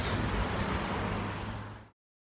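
Wind buffeting the microphone: a steady rushing noise with a low rumble, which fades and then cuts off abruptly just before the end.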